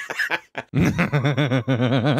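A man laughing: a run of quick, evenly spaced voiced pulses starting just under a second in.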